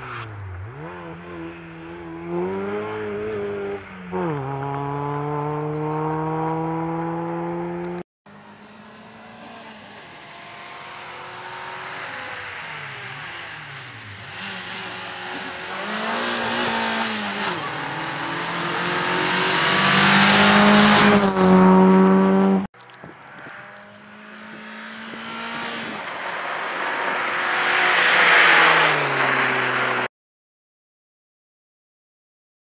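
Renault Clio rally car's four-cylinder engine revving hard through the gears, its pitch climbing steadily and dropping back at each gear change. It comes closer and louder in three separate passages, each broken off abruptly.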